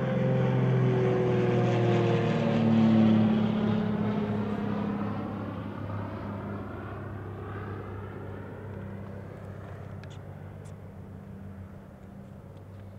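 A passing engine: a steady low hum whose pitch falls slightly, loudest about three seconds in, then fading away.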